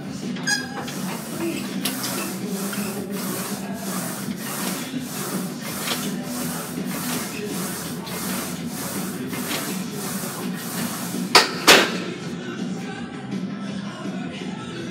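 Music with a steady beat playing over gym background noise, then two sharp metal clanks close together a little before the end: the loaded Smith machine bar being racked after a set of seated shoulder presses.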